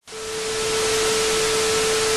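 Television static sound effect: a steady hiss of noise with a single steady hum-like tone beneath it. It fades in over the first half second.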